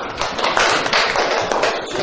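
A group of schoolchildren applauding: quick, dense hand clapping.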